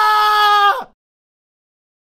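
A single steady, high-pitched held note with overtones, which cuts off abruptly just under a second in, followed by silence.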